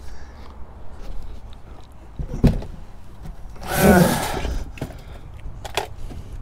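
Small mini-PC cases being handled and stacked: a few sharp knocks and clatters over a low steady hum, with a louder half-second sound about four seconds in.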